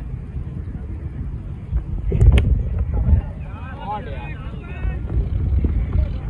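Cricket bat striking the ball once, a sharp crack about two seconds in, over a steady rumble of wind on the microphone. Players' voices shout shortly after the hit.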